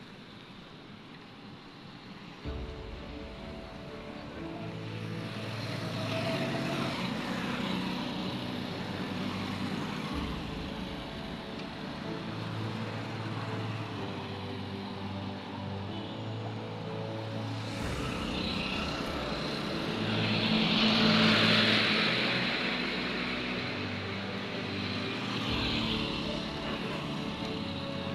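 Road traffic of passing motorcycles and cars, with background music of held notes coming in about two and a half seconds in. A vehicle passing close, about twenty seconds in, is the loudest moment.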